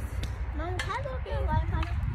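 Brief speech that the transcript did not catch, over a steady low outdoor rumble.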